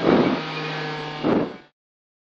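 Honda Civic rally car's engine running steadily, heard inside the cabin, with two brief louder surges: one at the start and a shorter one just after a second in. The sound cuts off suddenly near the end.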